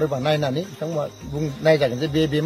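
A man talking, with a steady, high chirring of crickets behind his voice.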